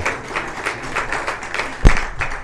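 Congregation applauding in response, a dense patter of many hands clapping, with one sharp thump near the end that is the loudest sound.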